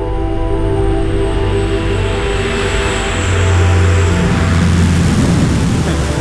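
Sustained music tones fading out over the first couple of seconds while the drone and rush of a twin-engine turboprop plane build up, with a deep hum loudest past the middle.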